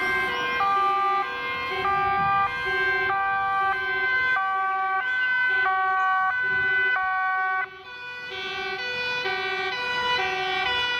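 Several two-tone emergency sirens from police vehicles and a fire engine on an urgent call, each stepping back and forth between a high and a low note about every half-second and sounding out of step with one another. The sound drops for a moment near the end, then picks up again.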